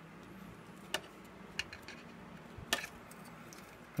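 Three light clicks and taps from a car stereo head unit's sheet-metal chassis and plastic parts being handled during reassembly, the third the loudest, over a faint steady low hum.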